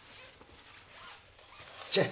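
A cloth flag rustling faintly as it is unfolded and handled, with a short, sharp, louder sound just at the end.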